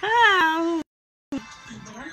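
A man's single loud, high-pitched squealing laugh, under a second long, rising and then falling in pitch, likened to a piglet's squeal.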